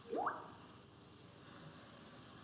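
A single short sip from a mug, a slurp rising quickly in pitch just after the start.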